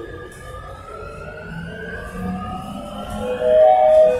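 Barcelona Metro 9000-series train's traction motors whining, several tones rising slowly in pitch as the train accelerates. A louder chime comes in near the end.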